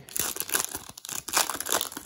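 Foil wrapper of a Panini Mosaic football card pack crinkling and tearing as it is ripped open by hand: a run of irregular crackles and rustles.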